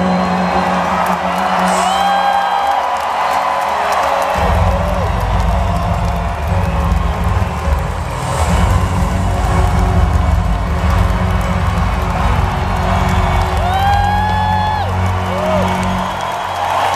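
Concert crowd cheering and whooping over a rock band's closing music, with a heavy low note that comes in suddenly about four seconds in and is held.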